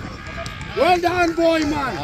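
A person's loud, drawn-out shout, held on one pitch for about a second in the middle, over fainter talk.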